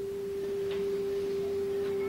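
A steady, pure electronic tone held at one unchanging mid-low pitch, with no other sound of note.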